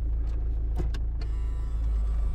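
A Volkswagen Golf IV's 1.9 diesel engine idling with a steady low hum. About a second in, a steady high buzzing starts when the automatic gearbox is put in reverse. It is heard only in reverse, not in neutral or drive, and the owner wonders whether sensors cause it.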